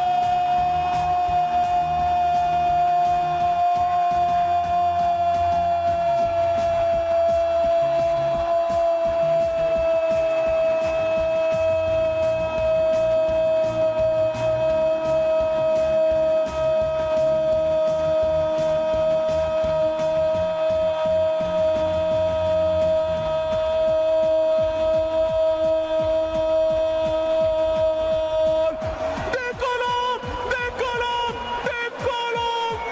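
A football commentator's prolonged goal cry, one held note that sinks slowly in pitch for nearly half a minute, over background music with a bass line; the cry breaks off near the end.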